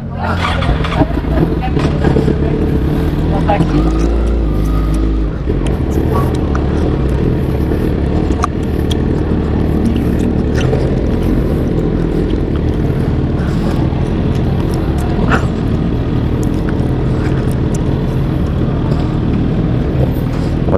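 Sport motorcycle engine running at low speed as the bike rolls slowly, a steady low engine sound throughout.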